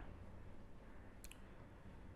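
Faint room tone broken by one brief, sharp click of a computer mouse a little past a second in.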